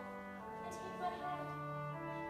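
Instrumental music with long held notes, shifting to new pitches about half a second in and again a second later.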